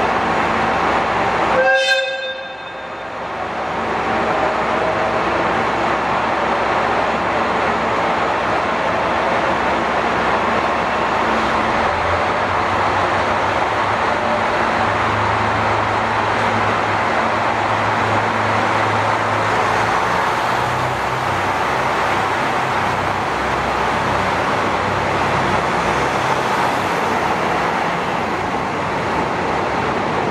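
JR Hokkaido KiHa 183 series 'Crystal Express' diesel multiple unit giving a short horn toot about two seconds in, then pulling away from the platform. Its diesel engines keep up a steady running noise, and a low engine note comes in about twelve seconds in and strengthens as the train gathers speed.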